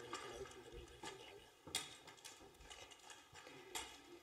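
Quiet room tone with faint, indistinct voices and a few sharp taps. The loudest two taps come a little before halfway and near the end.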